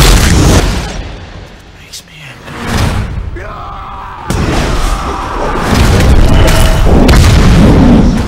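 Movie-trailer sound mix: deep booming hits over music, dropping to a quieter stretch, then a man's loud roar about four seconds in, followed by more heavy booming.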